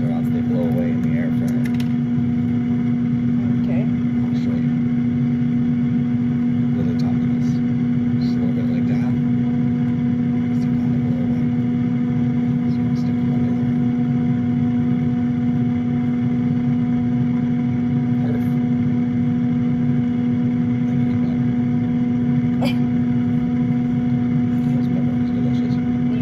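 Countertop air fryer running: a steady, unchanging electric motor hum with a fan's rush beneath it. A light click comes near the end.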